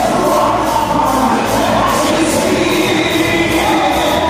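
Live gospel music: a congregation singing with a band, with a steady beat.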